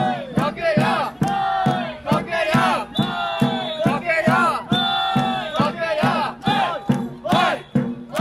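A group of samba performers chanting loudly together in rhythm, short shouted calls following one after another, with a drummer calling out through cupped hands.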